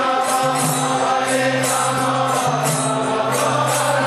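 Devotional kirtan: a group chanting together to a melody over a steady held drone, with hand cymbals striking a steady beat.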